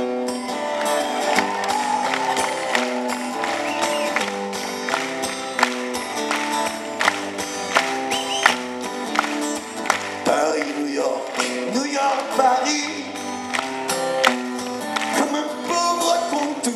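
Live band playing the instrumental opening of a song: sustained pitched chords that change every half second or so, under frequent sharp percussion hits.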